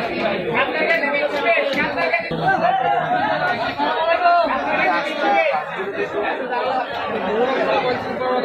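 Several people talking at once in a busy chatter, with no single voice standing out.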